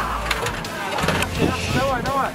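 Metal clanks and knocks as parts of a twin-barrel anti-aircraft gun are handled and pulled apart, with men's voices calling out near the end over a low hum.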